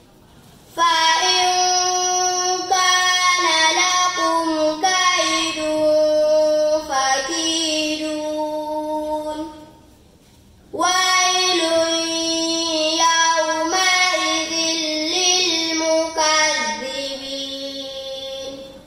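A girl reciting the Quran in a melodic, chanted style. She gives two long phrases of held notes with ornamented turns in pitch, with a breath pause of about a second near the middle.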